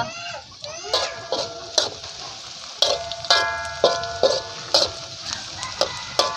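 Metal spatula scraping and knocking against a wok about twice a second while shallots and dried anchovies sizzle in hot oil; some strokes leave the wok ringing briefly.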